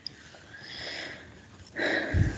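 Breath noise close to a microphone: a soft sniff-like intake of air about half a second in, then a louder, sudden rush of breath near the end.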